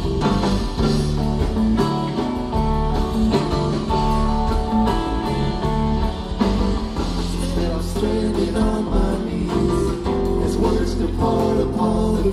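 Live rock band playing an instrumental passage, with electric guitar, bass guitar and drums.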